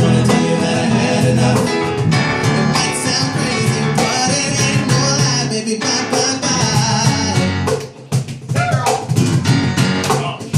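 Live band playing a pop-rock song: electric keyboard, electric bass and cajon, with a male lead singer on microphone. The music drops back briefly about eight seconds in, then comes back in.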